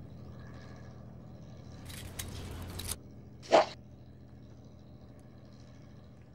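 A tape measure worked across a board on sawhorses: a scraping rustle lasting about a second, then one short, sharp sound about a second and a half later. A steady low hum runs underneath.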